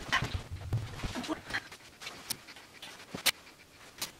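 Dresses on hangers being handled and shifted on a bed: fabric rustling in short bursts, with a sharp hanger click a little past three seconds in.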